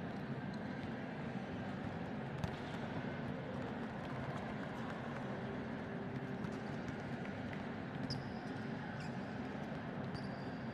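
Indoor sports-hall ambience: the steady hum of a volleyball arena with a sparse crowd, broken by scattered light knocks. A brief high squeak comes about eight seconds in.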